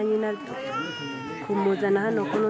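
A woman speaking, with a high, drawn-out call in the background that rises and then falls over about a second, midway through.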